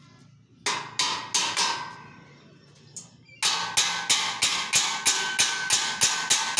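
Hammer blows on a stainless steel bed frame at the joint where a side rail meets the footboard, knocking the frame together; each strike rings metallically. Four strikes about a second in, a pause, then a steady run of about four strikes a second from the middle on.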